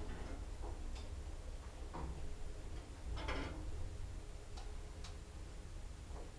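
Sabiem traction lift heard from inside the car as it travels down: a steady low rumble from the drive, with clicks about once a second, the loudest about three seconds in.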